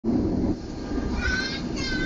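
Steady low rumble of the Sri Tanjung passenger train running, heard from inside the carriage. Two short high-pitched sounds come over it, about a second in and near the end.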